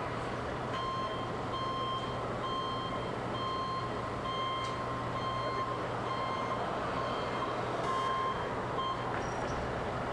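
A vehicle's reversing beeper sounding a short single-pitched beep about every 0.8 seconds over a steady low hum and street noise, stopping near the end.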